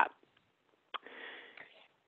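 A short silence, then a small mouth click about a second in followed by a soft intake of breath lasting just under a second: a speaker drawing breath before speaking again.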